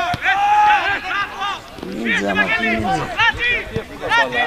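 Several men's voices shouting and calling out over one another at a football match, loud and close, with one lower voice joining about halfway through.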